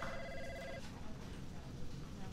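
A telephone's electronic ring, a steady two-tone trill that stops a little under a second in, followed by quiet room tone.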